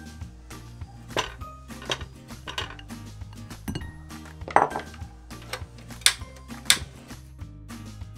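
Glass bowl and silicone spatula knocking and clinking against a small stainless steel saucepan as butter is scraped into it: a string of sharp knocks, the loudest about halfway through and two more near the end, over steady background music.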